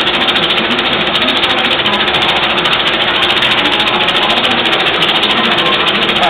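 A steady, fast rattling clatter that holds at one level throughout.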